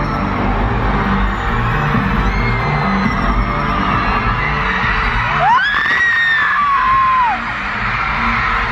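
Live arena concert music over the PA, carried by a heavy bass line that steps between notes. About five and a half seconds in, a single close voice whoops, sliding up in pitch and then down over about two seconds.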